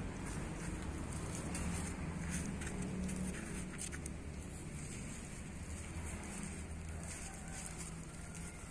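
Fingers crumbling and rubbing soil away from a root ball, a soft rustling with small crackles, heaviest in the first half, over a steady low hum.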